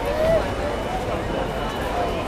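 Crowd chatter: many people talking over one another, with one voice calling out louder about a quarter of a second in.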